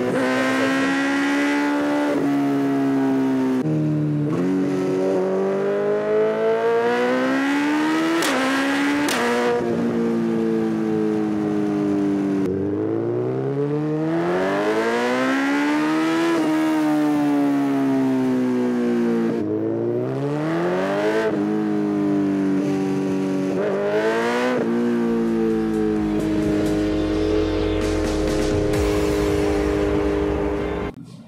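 Suzuki Hayabusa's 1340 cc inline-four engine accelerating hard through the gears at speed. The engine note climbs in pitch again and again and drops at each upshift, with stretches where it holds or falls off.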